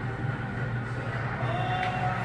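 Background room noise of a brewery taproom: a steady low hum, with a faint pitched sound gliding briefly near the end.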